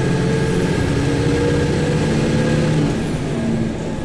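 Road vehicle's engine running while driving along, with a steady drone and road noise. The engine note climbs slightly over the first three seconds, then drops lower near the end.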